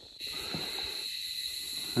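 A chorus of insects droning in one steady, high, even note, louder from a moment in.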